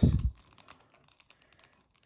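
Faint, irregular little clicks of a plastic action figure's articulated joints being rotated and handled.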